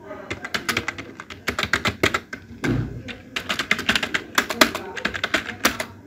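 Fast typing on a computer keyboard: quick runs of key clicks with short pauses, and one duller thump about three seconds in.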